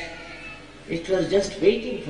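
Speech: a woman talking, starting about a second in after a short pause.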